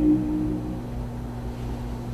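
The last held chord of an a cappella vocal harmony by a male group fading out within the first second, followed by a steady low hum.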